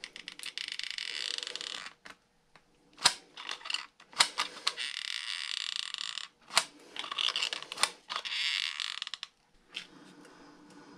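Hot glue gun being worked to lay glue: four stretches of rasping noise, each a second or so long, with sharp clicks between them.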